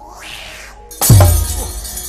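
Wayang kulit fight-scene accompaniment: a rushing swish, then about a second in a sudden loud crash with a deep boom and a long bright metallic clatter, marking a blow or explosion in the puppet battle.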